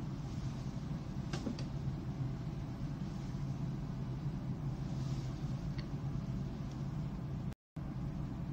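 A steady low hum with an even hiss over it, a few faint clicks about a second and a half in, and a brief cut to silence near the end.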